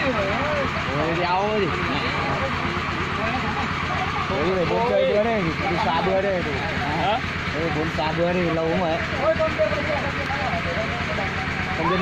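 A công nông tractor's single-cylinder diesel engine running steadily with an even low throb as it drives a water pump, with people's voices calling over it.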